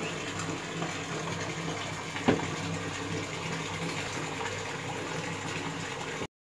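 Steady rushing noise with a low hum underneath, and one sharp click a little over two seconds in.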